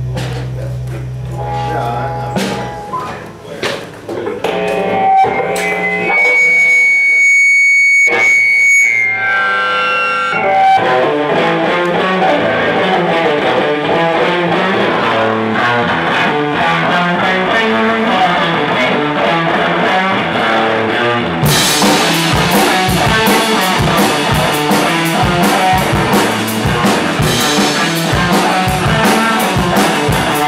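Live band with electric guitar: a low hum and scattered notes at first, a held high note partway through, then the playing thickens and a drum kit comes in about two-thirds of the way through, with the full band playing to the end.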